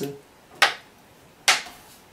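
Front grille cover of a Gale Gold Monitor MK2 bookshelf speaker clipping into place: two sharp clicks about a second apart as it snaps onto the cabinet.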